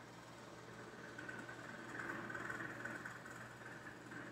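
Quiet room tone: a faint steady low hum, a little louder in the middle.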